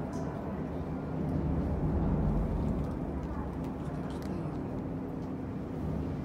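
Steady low rumble and hum of a passenger elevator's machinery as the car comes down to the lobby, swelling a second or so in, then a few faint clicks as the stainless steel car doors slide open near the end.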